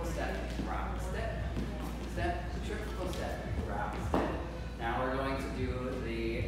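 A man's voice talking while dance shoes tap and scuff on a wooden floor as a couple dances swing steps.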